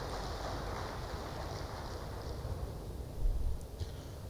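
Audience applauding faintly, the clapping thinning out and dying away over the first couple of seconds, over a low hum of room noise.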